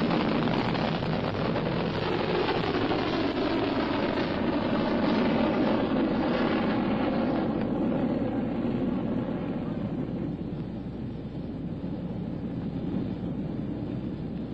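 Solid-fuel rocket motor of a Polaris test missile at lift-off from a flat launch pad and in its climb: a loud, steady rush of noise that turns duller and drops a little after about seven seconds as the missile climbs away.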